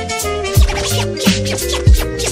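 Background music: an instrumental beat with a steady kick drum under sustained pitched tones.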